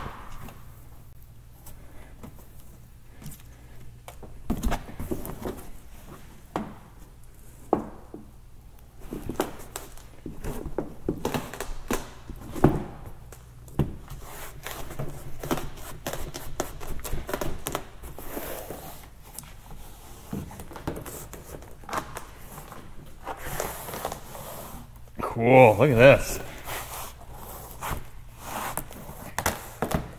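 A BedRug bed liner's tailgate panel being folded down and pressed flat onto the tailgate by hand: scattered rustles, scrapes and light knocks as the mat is handled and pushed against the adhesive strips. A short burst of voice comes near the end.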